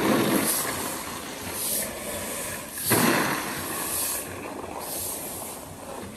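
Brooms and long-handled grain rakes swishing and scraping through rice grain spread on a concrete floor, in repeated strokes about once a second, the loudest about three seconds in.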